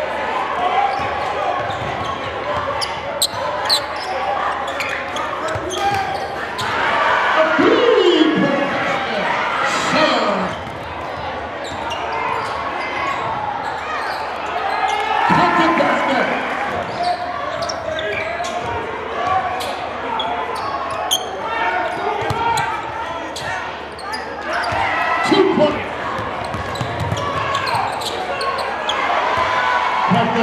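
Live basketball game sound in a large gym: a basketball bouncing on the hardwood court under the continuous chatter of the crowd, with loud shouts rising out of it several times.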